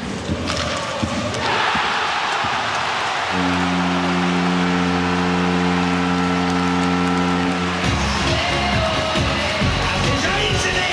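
Arena crowd roaring for a home goal in ice hockey. A goal horn then sounds one long steady chord for about four and a half seconds, and goal music with a heavy beat follows.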